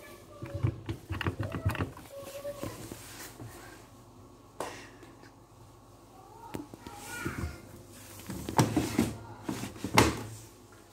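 Voices in the background, among them a child's, talking on and off, with a few clicks and a sharp knock near the end.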